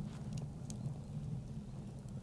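Faint outdoor ambience: a steady low rumble with a few faint crackles from a wood fire burning in a chiminea.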